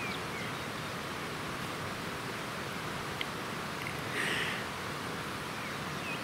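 Steady outdoor ambience: an even, quiet rushing hiss with no distinct source, and a faint short sound about four seconds in.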